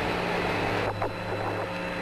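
Steady radio static from the Apollo 11 air-to-ground voice link between transmissions: a continuous hiss over a low, steady hum.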